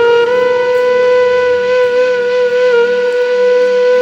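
Background music: a flute-like wind instrument holding one long steady note.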